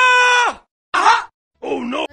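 A person's loud, drawn-out 'ohhh' groan, held on one high pitch and then falling away about half a second in. It is followed by two short vocal outbursts, one near the middle and one near the end.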